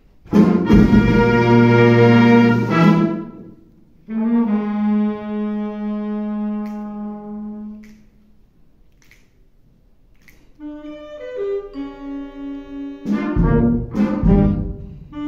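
Youth wind band playing: a loud brass chord held about three seconds, then a quieter sustained chord that fades away, a pause of about two seconds, then a run of short woodwind and brass notes building to a loud accent near the end.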